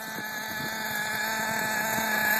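Two-stroke nitro glow engine of a Carson Specter 2 RC car running with a steady high-pitched whine, growing louder over the two seconds.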